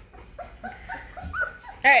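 Young Great Bernese puppies whimpering and squeaking in short repeated cries, the calls of puppies hungry for their mother's milk.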